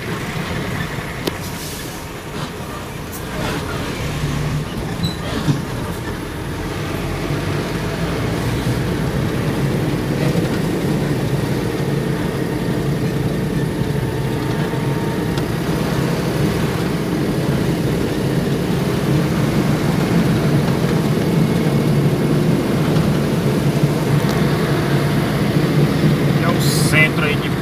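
Engine and tyre noise of a motor vehicle driving steadily along a town street, heard from inside the cab as a continuous low hum that grows gradually louder.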